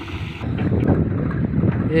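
Water hissing from a tanker's rear spray bar onto a gravel road, cut off abruptly about half a second in. Wind then buffets the microphone in a dense low rumble.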